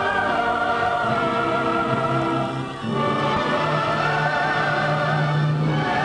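Closing film music: a choir singing long held notes with vibrato over an orchestra, moving to a new chord about three seconds in.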